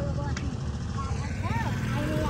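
Motor scooters running at low speed with a steady low rumble, and a short high voice call about one and a half seconds in.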